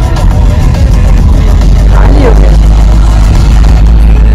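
Loud, steady low rumble of travel on a moving vehicle: road and wind noise on the microphone. A voice glides briefly about two seconds in.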